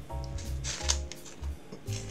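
Background music with a repeating bass line and held notes, over which an Umaibo corn puff stick in its plastic wrapper gives a short crackly rustle and crunch about half a second to a second in.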